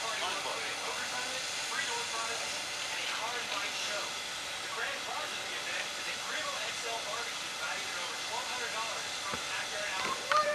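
Indistinct chatter of several people talking in the background, no words clear, over a steady hiss.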